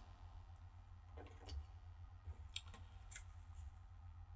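Near silence with a few faint, short clicks from handling a small clip-on guitar microphone and its thin lead, over a low steady hum.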